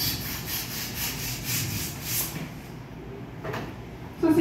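A toy balloon being inflated with a small hand pump: quick, even puffs of air, about four strokes a second, for about two seconds, then quieter.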